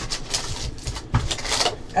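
Foil trading-card pack crinkling and the cardboard hobby box rustling as a pack is handled and pulled out: a string of short, irregular crackles.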